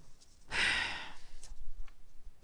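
A woman's short, breathy sigh about half a second in, followed by a couple of faint clicks.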